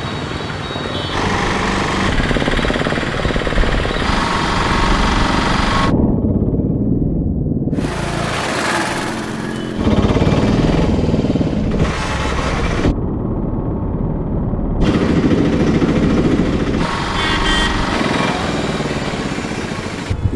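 Busy street traffic with auto-rickshaw and motorcycle engines running, edited into stretches that switch abruptly between clear and muffled, the muffled stretches losing all their high end.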